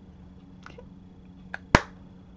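Small clicks of makeup items being handled and set down: two light clicks, then one sharp click near the end, over a faint steady low hum.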